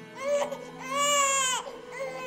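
Newborn baby crying in short wails: a brief one, a longer wail about a second in, and another starting at the end, over soft background music with held notes.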